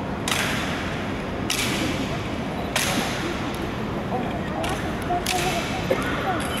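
Honour guards' rifle drill: about five sharp swishing slaps as the rifles are swung and handled, spaced a second or so apart, over a low murmur of onlookers.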